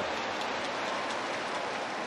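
Baseball stadium crowd cheering and clapping in a steady wash of noise, reacting to the home team getting an out.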